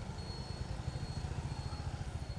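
Outdoor ambience at a city roadside: a steady low rumble, with a faint high tone that comes and goes.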